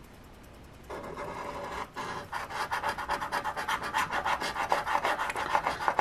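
Scratch-off lottery ticket's coating being scraped off with a hand-held scratcher in rapid back-and-forth strokes, about eight a second. It starts about a second in, pauses briefly near two seconds, then keeps going.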